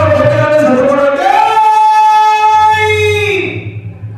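Villu paattu singing: a sung Tamil ballad line that settles into one long held note which bends down and fades near the end, over a steady low drone.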